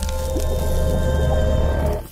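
Intro music for an animated logo: a held chord over a strong deep bass, with a wet splattering sound effect, dying away at the very end.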